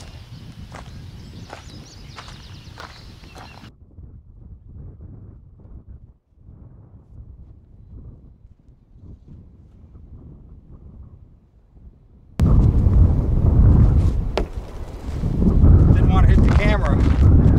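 Wind buffeting the microphone: a low rumble throughout, with a few faint clicks in the first few seconds. About twelve seconds in it suddenly gets much louder.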